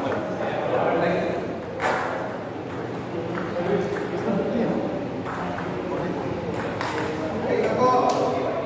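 Table tennis rally: the ball clicking sharply off the rubber bats and the table in quick exchanges, over a murmur of voices in the hall.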